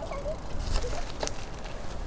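Wind rush on the microphone and tyre rumble from a road bike rolling along a paved path, with a couple of sharp clicks from the bike.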